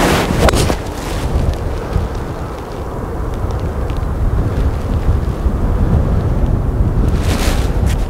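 Wind buffeting the microphone throughout, with a sharp click near the start as a TaylorMade Stealth 3 wood strikes a teed golf ball.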